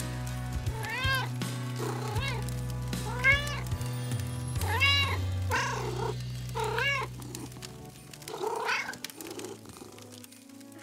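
A cat meowing, about seven separate meows that each rise and fall in pitch, over background music with steady low notes.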